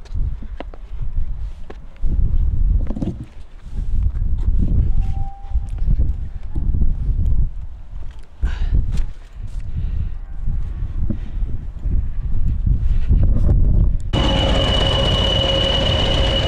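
Gusty wind buffeting the microphone, mostly a low rumble. About fourteen seconds in it switches abruptly to a diesel locomotive running at a station platform, a steady engine sound with a high, even whine.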